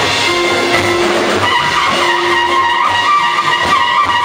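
Live jazz quintet playing: a horn sustaining long notes over piano, upright bass and a drum kit with busy cymbal and drum work.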